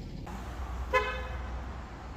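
A vehicle horn gives one short, steady toot about a second in, over a low rumble of street traffic.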